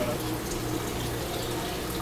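Steady rush of water flowing through an aquarium tank's circulation plumbing, with a low steady hum underneath.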